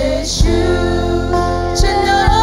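Live worship band playing a gospel song with singing: electric guitars over held bass notes, with a few sharp beats.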